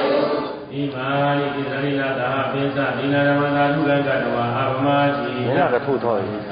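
A man's voice chanting a Buddhist recitation in long, steady held notes, with a brief wavering turn in pitch near the end.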